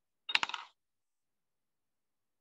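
A brief clatter of a few sharp clicks, lasting under half a second, about a third of a second in.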